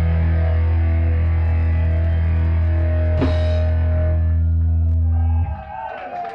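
Punk band's final chord held on distorted electric guitars and bass, ringing steadily at a constant level, then cut off abruptly about five and a half seconds in, marking the end of the song.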